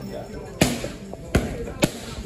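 Boxing gloves striking focus mitts in pad work: three sharp smacks, the first just over half a second in and the last near the end.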